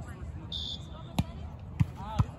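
Two sharp smacks of a volleyball being hit during a rally, a little over half a second apart.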